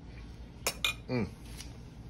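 A metal fork set down on a ceramic plate: two quick clinks about a second in, with a brief ring.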